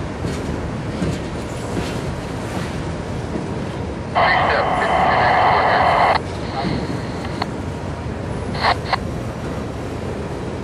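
Railroad radio scanner: a two-second burst of clipped, narrow-band radio transmission about four seconds in, then two brief radio bursts near the end, over a steady low rumble.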